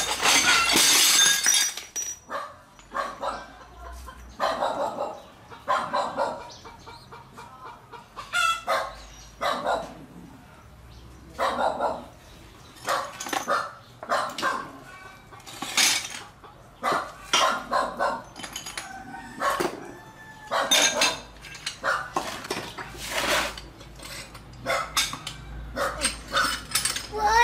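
Ceramic bowls and plates clattering and clinking against each other in a plastic basin of water as they are handled and washed by hand, in irregular bursts. A loud clatter in the first two seconds as the basin of dishes is set down.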